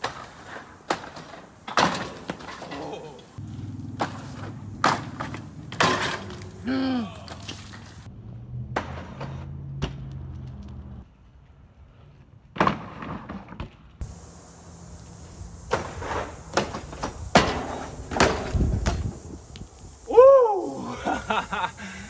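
BMX bikes landing on and knocking against wooden benches during tricks: a run of separate sharp knocks and clacks, with short shouts between them.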